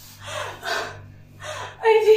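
A woman's short gasping breaths, a few in quick succession, as she strains to crush a watermelon between her thighs, with a louder voiced laughing cry near the end.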